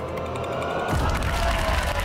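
Quiz-show score-countdown sound effect: a slowly falling electronic tone with fast ticking as the score drops. About a second in it stops with a low boom as the score settles, and a held tone follows while the audience starts to applaud.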